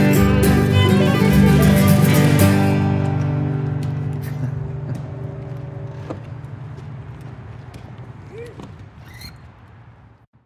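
Acoustic guitar and violin playing the last bars of a folk song, stopping on a final chord about two and a half seconds in. The chord rings on and fades away steadily to the end.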